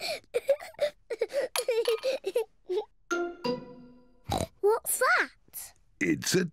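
Cartoon pig voice (Peppa Pig) giving a run of short snorts, then a ringing cartoon sound effect about three seconds in and a sharp click as her loose milk tooth drops onto the plate, followed by a brief rising-and-falling vocal glide.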